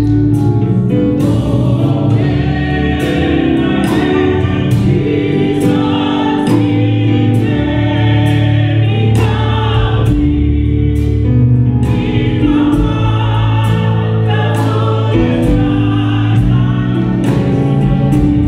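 Church choir singing a gospel song in full voice, backed by accompaniment with a steady beat.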